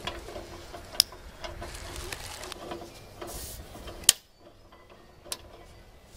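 Sharp clicks and knocks from handling metal studio light fixtures: one about a second in and a louder one about four seconds in, with a smaller one near the end.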